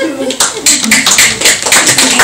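Audience applauding, a quick run of many hand claps that starts about half a second in and keeps going, with a woman's voice underneath.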